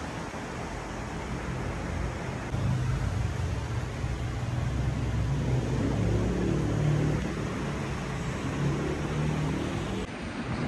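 Steady traffic noise with a low engine hum that grows louder about two and a half seconds in.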